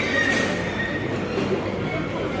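Steady din of a busy buffet dining room: crowd chatter and clatter blended into one continuous noise. A brief high ringing tone sounds in the first second.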